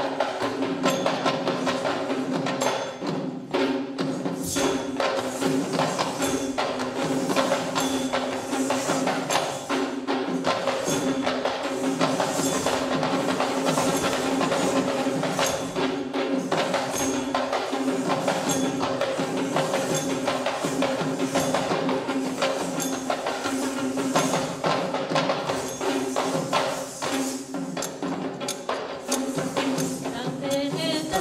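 Sri Lankan Kandyan dance music: rapid hand-drumming on barrel drums, a dense run of strokes over a steady held tone.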